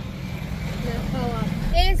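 Street noise with faint voices, then a sudden change about three-quarters of the way in to the low rumble of a moving car heard from inside the cabin, with a woman's voice starting over it.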